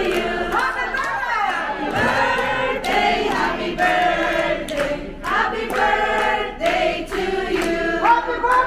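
A group of people singing together in held notes, with some scattered hand claps.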